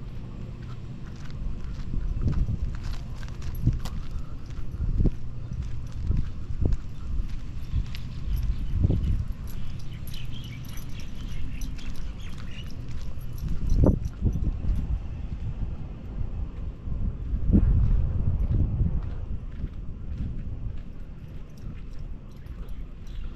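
Footsteps on pavement and handling knocks from a walking camera: irregular low thumps, a few louder ones, over a steady low rumble.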